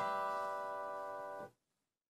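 Acoustic guitar's last chord, strummed and left ringing, fading slowly and then stopping abruptly about one and a half seconds in.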